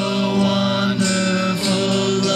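Live music: two acoustic guitars played together while a man sings long held notes, changing pitch about once a second.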